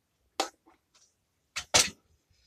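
Two short clunks of test gear being handled and set down on a workbench, the second one louder, near the end.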